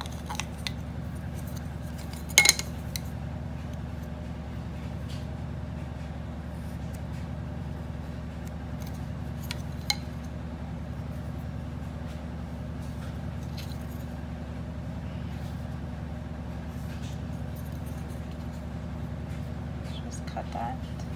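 Small hard tools, a craft knife and a metal ruler, clicking and knocking against a cutting mat as fondant is measured and cut, with a sharp click about two seconds in and another around the middle. A steady low hum runs underneath.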